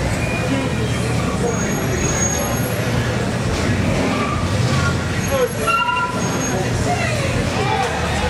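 Slow street traffic with car engines running close by and a steady low rumble, mixed with crowd voices and shouting that grow more prominent in the second half.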